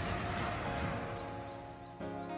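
Wind and surf noise on the microphone fading away while soft background music fades in with steady sustained notes.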